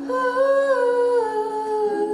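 A singer's voice holding one long wordless note that slides gently down in pitch after about a second. Underneath it, a strummed acoustic chord rings on.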